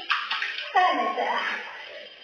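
A voice speaking: a short rush of breathy hiss, then a phrase of speech about a second in.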